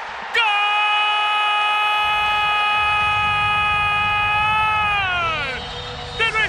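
Spanish-language football commentator's drawn-out goal call, "gol" shouted as one held note for about four and a half seconds that slides down in pitch near the end. Stadium crowd noise swells underneath from about two seconds in.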